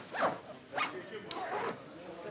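Clothes and a cloth bag handled while packing: three short rustling strokes about half a second apart, with a sharp click between the last two.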